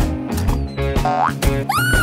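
Upbeat cartoon background music with a steady beat, with comic sound effects laid over it: a rising pitch glide about a second in, then a boing whose pitch rises and falls near the end.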